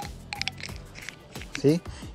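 A few light clicks and rustles of a screwdriver being slipped into a tool-backpack pocket, about half a second in, over faint background music.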